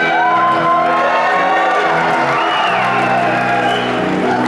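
Live rock band playing a slow ballad, with held chords under a lead line that slides in pitch and no singing, heard in a large hall.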